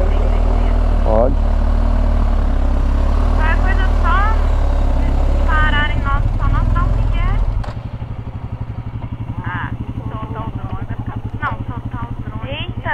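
BMW boxer-twin motorcycle riding with heavy wind and road noise, then about seven and a half seconds in the rush drops away as the bike comes to a stop. The engine idles with a rapid, even low pulse.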